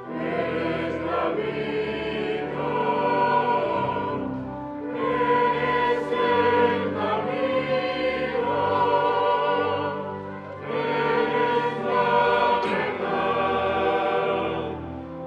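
Church choir singing a communion hymn at Mass, phrase by phrase, with brief breaths between phrases about four and ten seconds in.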